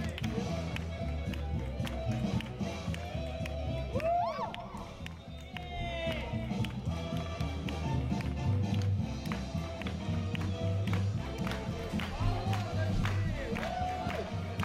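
Fast swing music with a walking bass and a steady beat.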